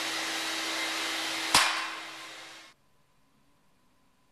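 Steady rushing noise with a low hum, like a fan or machinery running. A sharp click comes about a second and a half in, then the sound fades out to near silence.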